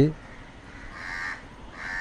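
A crow cawing faintly in the background, twice: once about a second in and again near the end.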